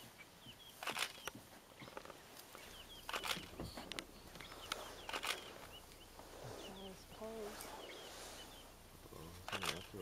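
Faint bush ambience: small birds chirping over and over, with four sharp cracks spread through and a brief low voice-like sound past the middle.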